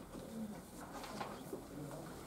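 Quiet room with faint low murmuring and the scratch and rustle of pens and paper.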